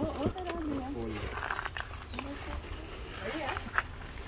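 Low, indistinct voices with a few clicks and rustles of things being handled, over a steady low rumble.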